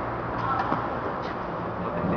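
Tennis ball struck with rackets during a rally on an indoor clay court: a few short knocks, the sharpest under a second in, over the steady noise of the hall.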